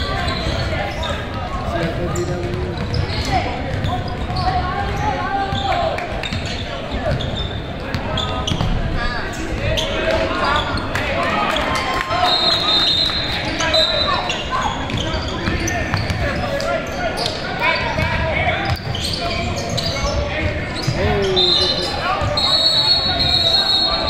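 Basketball game in a large echoing gym: a ball bouncing on the hardwood court amid voices of players and spectators calling out. A few short high squeals come about halfway through and again near the end.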